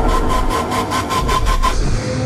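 Trailer score and sound design building to a climax: a heavy low rumble under a held high tone and a fast pulse of about eight beats a second, with the low rumble cutting off sharply at the end.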